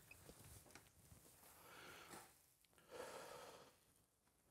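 Near silence, with two faint breaths about two and three seconds in: a man exhaling after a drag on a cigarette.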